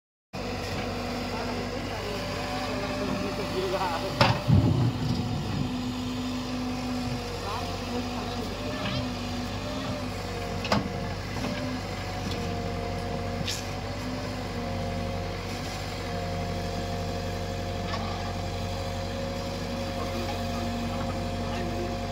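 JCB 3DX backhoe loader's diesel engine running steadily under load while the backhoe digs, with a few sharp knocks from the bucket striking soil and stones, the loudest about four seconds in and others near eleven and thirteen seconds.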